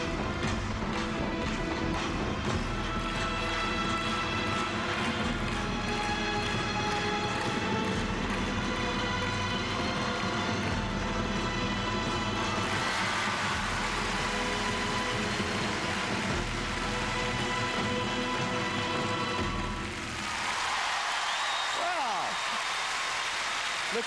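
Figure-skating program music playing in an arena. About halfway through, the crowd starts cheering and applauding over it. The music ends about 20 seconds in, and the applause and cheering carry on.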